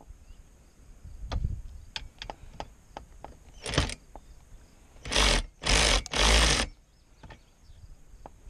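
A WorkPro 3/8-inch drive cordless ratchet running in three short trigger pulls between about five and six and a half seconds in, after a briefer pull a little earlier, turning a fastener on a metal bracket. Light clicks and knocks of handling fall in between.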